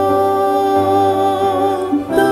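A woman singing one long held note over soft piano accompaniment, with a steady low bass note beneath.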